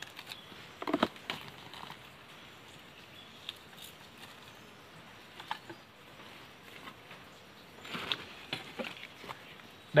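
Quiet, scattered knocks and rustles of split wood kindling being handled and laid into a charcoal-filled fire pit, the clearest knock about a second in and a small cluster near the end.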